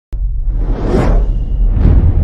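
Logo-intro sound effect: a whoosh over a deep, steady bass rumble, swelling to a peak about a second in, with a second, shorter whoosh near the end.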